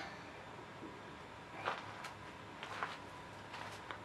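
Quiet background with a few faint, short clicks and taps, about two seconds in and again near the end: small handling noises.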